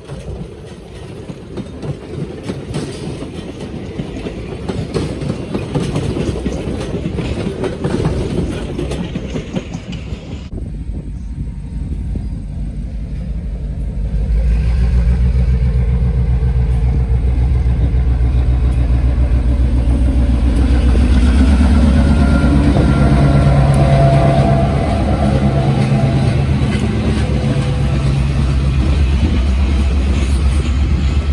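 Passenger coaches rolling past, their wheels clicking over the rail joints. After a sudden change about ten seconds in, a diesel road-switcher locomotive comes closer and passes, its engine running with a loud, steady low drone from about fourteen seconds on, followed by cabooses rolling by.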